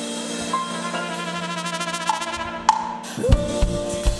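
Live cumbia pop band opening a song: held keyboard notes, then drum kit and bass come in with a steady beat a little over three seconds in.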